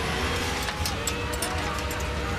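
Fire engine running with a steady low rumble and hum as its aerial ladder is driven out from the joystick controls, mixed with background music.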